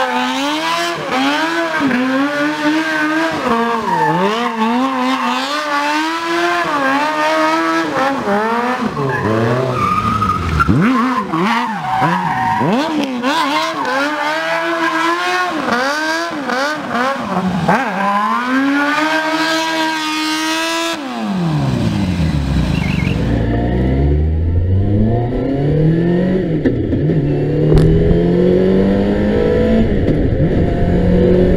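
Campagna T-Rex three-wheeler's BMW inline-six engine revved up and down hard while the car spins in a burnout, rear tyre squealing. About two-thirds of the way through, the sound cuts to another vehicle's engine heard from the cockpit, pulling up through the gears with a rising note.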